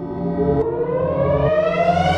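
Electronic outro music: a siren-like synth sweep rising steadily in pitch over held low notes, building up.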